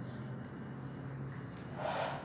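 A short, sharp breath-like rush of air near the end, from a person eating, over a low steady hum.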